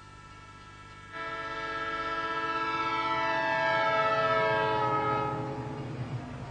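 Train horn sounding one long blast that starts about a second in, grows louder and sinks slowly in pitch as the train passes, then stops shortly before the end, over the low rumble of the passing train.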